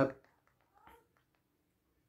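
A man's voice finishing a word, then near silence with one faint, short sound just under a second in.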